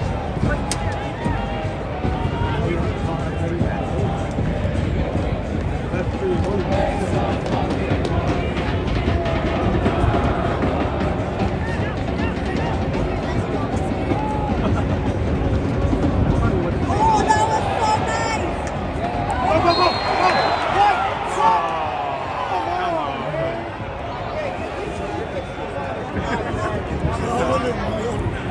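Soccer stadium crowd in the stands: a dense mass of voices talking, shouting and chanting, swelling into louder, more tuneful chanting for a few seconds past the middle.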